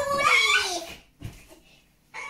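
A child's high-pitched, drawn-out vocal sound that slides down in pitch over about a second, like a meow, followed by a soft thump.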